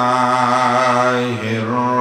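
A man's voice chanting Arabic in the melodic style of Quran recitation, holding two long, steady notes with a short break between them.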